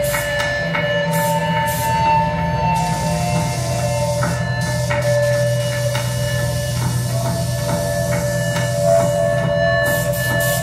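Experimental electronic drone music played live from a computer synthesizer setup: several steady held tones over a low hum, with a higher tone sounding for about two seconds near the start. Scattered small clicks and ticks run through it.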